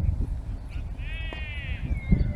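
A single drawn-out, bleat-like call lasting about a second, rising slightly then falling away, heard over wind rumbling on the microphone.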